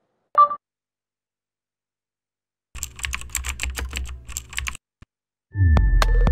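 Sound design of a TV channel's closing logo sting: a short electronic beep, then about two seconds of rapid clicks like typing over a low rumble, then near the end a loud deep swoosh falling in pitch with held electronic tones.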